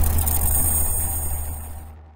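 Outro audio with a deep steady rumble and a few faint high steady tones, fading out toward the end.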